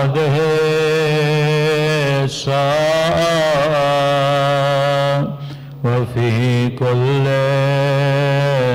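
A man's voice chanting a melodic religious recitation in long, held notes with wavering pitch. Short pauses for breath break it about two seconds in and again about five to six seconds in.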